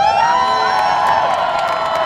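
Crowd cheering and whooping, many voices rising together at once and held. Scattered clapping comes in near the end.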